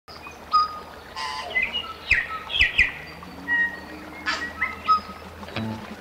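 Several birds calling in forest: scattered short chirps and whistles, some falling in pitch. A low held note comes in about halfway, and music begins near the end.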